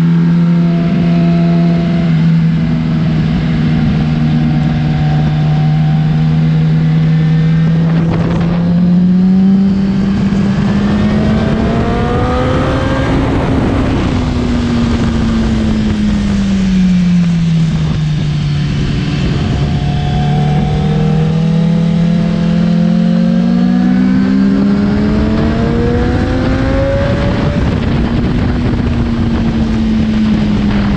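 Kawasaki Ninja sportbike engine at speed on a track, heard from onboard: the engine note holds steady, climbs smoothly to a peak a little under halfway through, drops back as the throttle eases, then climbs again before levelling near the end. A steady rush of wind noise runs under it.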